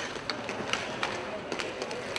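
Inline hockey play: skate wheels rolling on the rink floor, with a few sharp clicks of sticks and puck, and players' voices in the background.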